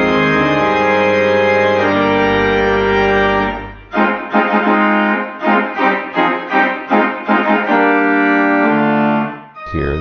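Pipe organ playing sustained chords over a deep pedal bass. About four seconds in, it changes to short, detached chords about three a second without the pedal; near the end, sustained chords and the bass return and cut off.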